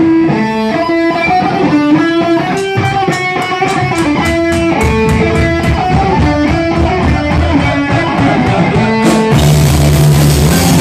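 Live metal band opening a song: an electric guitar picks a stepping melodic line, joined by sharp ticks keeping a steady beat. About a second before the end the full band with drums comes in loudly.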